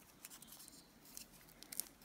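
Faint rustling and a few soft clicks of masking tape being handled and pressed around a small stick.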